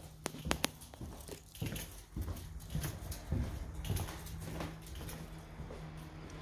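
Footsteps on a bare wooden floor, a soft thud about every half second, with a few sharp clicks in the first second and a faint steady hum underneath.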